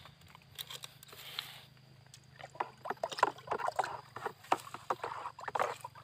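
Liquid pesticide and fungicide spray mix being stirred by hand in a plastic bucket: irregular sloshing and splashing, busier from about halfway through.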